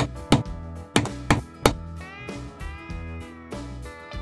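A long screwdriver knocking against the steel wheel rim as it is worked in to break a stuck tyre bead from the rim: about five sharp knocks in the first couple of seconds. Background guitar music plays throughout.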